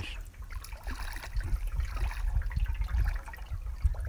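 River water trickling and lapping around a jon boat while a hooked channel catfish stirs the surface beside it, under a steady low rumble of wind on the microphone.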